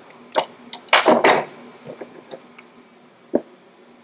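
Light metallic clicks and ticks of pliers and a steel cotter pin being handled at a connecting rod's wrist pin bolt, with a sharp click near the end. A louder, rough burst comes about a second in.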